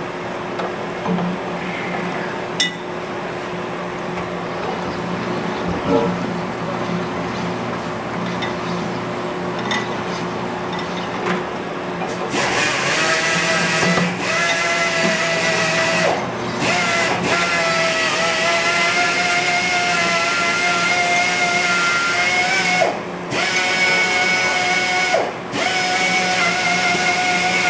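Sunnen honing machine running with a steady hum. About twelve seconds in, a Datsun truck spindle's kingpin bushing goes onto the spinning hone mandrel and the stone sets up a loud, steady high-pitched whine. The whine breaks off briefly several times as the part is worked on the mandrel.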